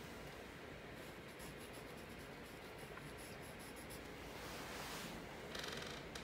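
Faint scratching of a graphite pencil drawn in light, repeated strokes across drawing paper.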